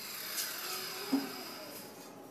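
A steady machine-like whir with a faint high whine, slowly fading, and one light tap about a second in.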